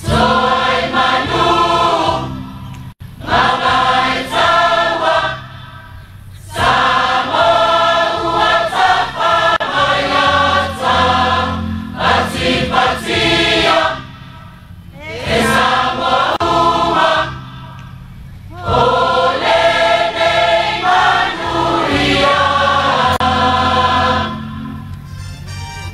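A choir singing in phrases broken by short pauses, about five phrases, over a steady low accompaniment that carries on through the breaks.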